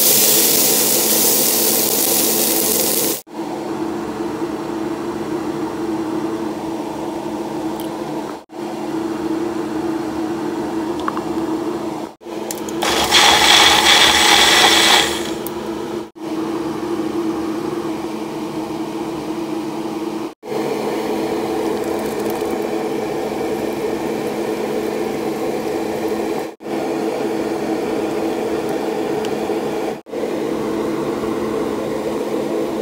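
Green beans sizzling in a hot pot while a wooden spoon stirs them. Later comes a Magic Bullet blender running for about two seconds, the loudest sound. A steady low hum runs through the quieter stretches between.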